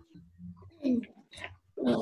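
Faint, muffled voice-like sounds from a child's microphone on a video call, then a short rush of breathy noise near the end.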